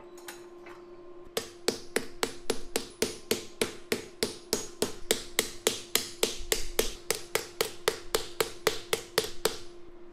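Hand wire brush scrubbing welding slag and scale off a welded block of chain links, in quick even strokes about four a second that start about a second and a half in.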